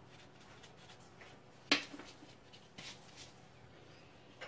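Quiet room with one sharp tap a little under two seconds in, and a couple of faint ticks later: a small glass bowl lightly knocking as ground black pepper is sprinkled from it.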